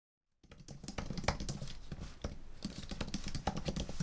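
Typing on a computer keyboard: quick, irregular key clicks that begin about half a second in.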